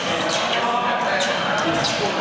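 Fencers' footwork on the piste: shoes thudding and squeaking in quick, short steps and stamps, over a steady background of voices in a large hall.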